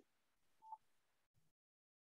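Near silence, broken once by a short, faint electronic beep about two-thirds of a second in.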